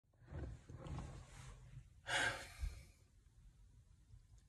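A man's faint breathing, ending about two seconds in with one louder, breathy exhale lasting about half a second.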